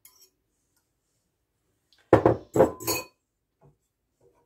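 A fork clicks lightly against a ceramic mixing bowl, then about two seconds in come three loud, sharp clattering knocks of crockery and kitchen utensils being handled at the stove.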